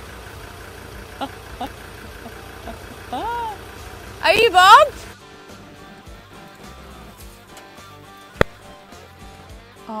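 A 4WD's engine running at low speed while towing a caravan along an overgrown track, with short loud exclamations of alarm, the loudest about four and a half seconds in. About five seconds in the vehicle sound cuts away to background guitar music, with one sharp click near the end.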